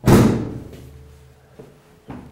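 The sheet-metal front cover of a gas boiler is pushed shut. It makes one loud thud right at the start that rings on and dies away over about a second.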